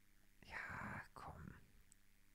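Near silence, with a person speaking very softly under their breath for two short syllables about half a second in.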